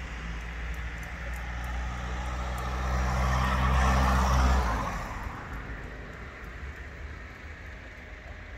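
A motor vehicle passing close by: a low engine hum with tyre and road noise that builds to its loudest about four seconds in, then fades away.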